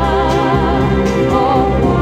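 1966 Spanish beat-pop record playing: long held melody notes with a wavering vibrato over bass and chords, with a drum hit about every three quarters of a second.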